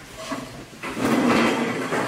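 Metal folding chairs scraping and clattering on the floor and people shuffling as a roomful of people sit back down at tables. It is a loud, rough noise that starts about a second in.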